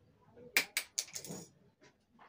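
A few sharp clicks, two close together about half a second in and a softer one just after, as a pen and its cap are handled in an attempt to pop the cap off.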